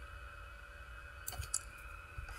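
Quiet room tone with a handful of faint computer-mouse clicks about a second and a half in.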